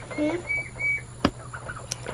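Poultry peeping: four short, high, steady-pitched peeps in the first second, then a couple of sharp clicks.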